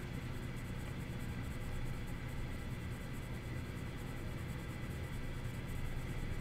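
Faint scratching of a Prismacolor colored pencil stroked at light pressure over marker-coloured paper, under a steady low hum.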